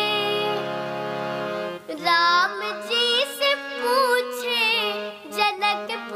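A young girl singing a Hindi devotional bhajan to harmonium and tabla accompaniment. She holds one long note over a steady harmonium chord for about the first two seconds, then sings ornamented phrases that bend up and down in pitch.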